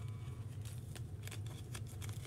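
Faint irregular crackling and ticking of adhesive transfer paper being rubbed onto small vinyl honeycomb decals and peeled off their backing sheet, over a steady low hum.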